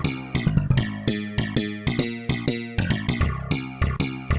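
Sampled slap bass patch playing a sequenced MIDI bass line of short, plucked notes that each decay quickly. Its velocity mapping makes every note sound slapped.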